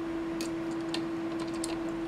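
A few faint, short clicks and ticks of a small wrench working on the antenna's coaxial SMA connector as it is tightened, over a steady hum.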